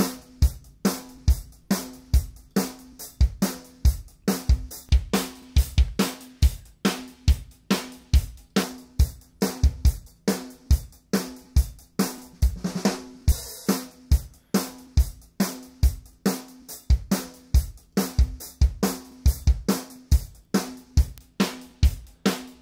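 A recorded drum kit and bass groove playing a steady beat of kick, snare and hi-hat over a held bass note. It runs through a tape-machine emulation plug-in set to an A827 15 ips preset.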